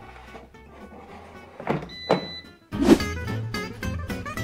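Background music, then swooshing transition sound effects: quick sweeps about halfway through and a loud whoosh with a hit near the end.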